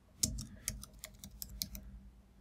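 Typing on a computer keyboard: a run of key clicks at about four a second, the loudest a quarter of a second in.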